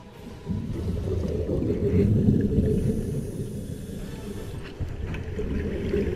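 A loud, low rumbling noise that swells in about half a second in, is strongest around two seconds and then eases a little.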